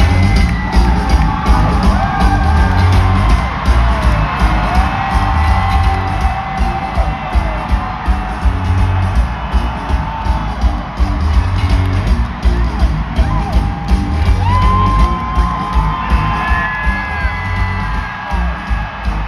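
Rock band playing live in an arena, heard from the crowd, with heavy drums and bass under guitar. Voices singing with whoops run over the music.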